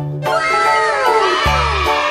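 Background music with a steady stepped bass line, overlaid by a children's cheering sound effect whose several voices fall in pitch together over about a second and a half.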